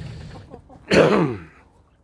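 A man clearing his throat once, about a second in: a short rough burst that falls in pitch. He is getting over a cold.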